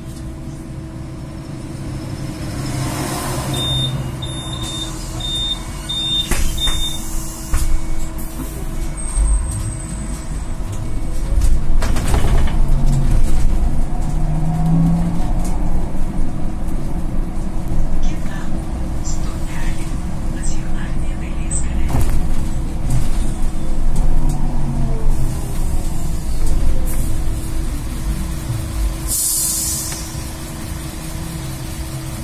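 Cabin sound of a Solaris Trollino II 15 AC trolleybus on the move: the electric drive's steady hum over road rumble, louder from about twelve seconds in. A run of five short high beeps comes a few seconds in, and a short hiss of air comes near the end.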